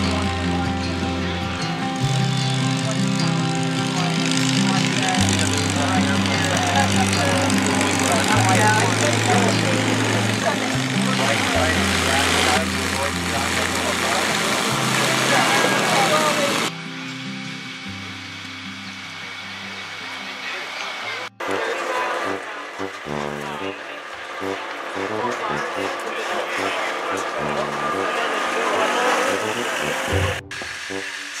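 Background music with a bass line stepping between notes every second or two. It turns abruptly quieter and thinner a little past halfway.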